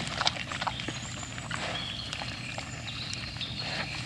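Wild boar herd feeding: a run of scattered crunches, clicks and snaps from rooting, chewing and trampling.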